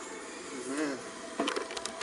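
Camera or phone being handled as the recording is stopped: a quick run of sharp clicks and knocks in the last half second, over faint room noise and a faint murmur of voices.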